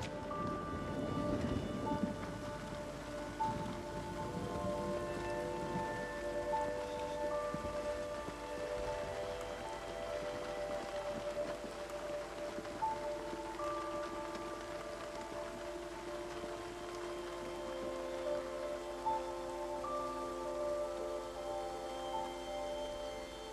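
Steady rain falling, with a soft film score of long held notes laid over it.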